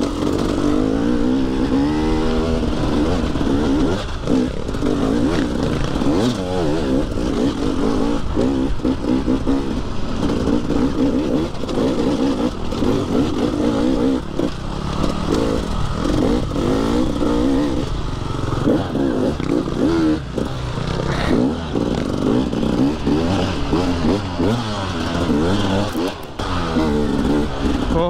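Dirt bike engine revving up and down continuously under a riding load, its pitch rising and falling every second or two with throttle and gear changes as it climbs and rides a rough dirt trail.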